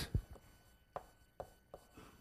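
Chalk striking a blackboard as numbers are written: a few short, sharp taps at uneven intervals, about five in two seconds.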